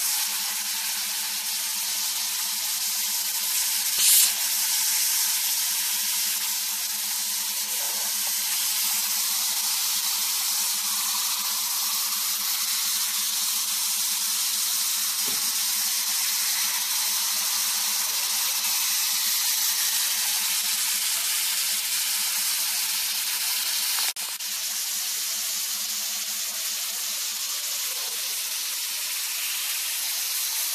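Hot-air welder for PVC-coated duct hose running: a steady hiss of hot air from its nozzle over a low steady machine hum, with a brief louder burst of hiss about four seconds in.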